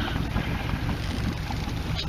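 Steady low rumble of a fishing boat's engine running at trolling speed, with a haze of wind and water noise over it.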